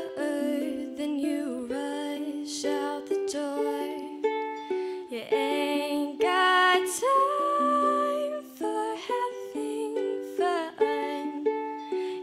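A young woman singing a song while accompanying herself on ukulele chords. She holds one long note about seven seconds in.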